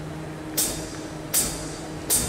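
Two crisp hi-hat taps about 0.8 s apart, the start of a drummer's count-in for the band, over a low steady hum from the stage amplification.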